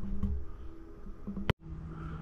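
Low rumbling room noise with faint hum, broken about one and a half seconds in by a sharp click and a moment of dead silence where the recording is cut, then a steady low hum.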